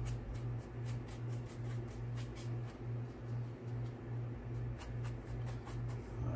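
A flat paintbrush scrubbing and dabbing paint onto a textured cloth-mache surface in quick, short scratchy strokes. The strokes thin out mid-way and pick up again near the end. Under them runs a steady low hum that pulses about twice a second.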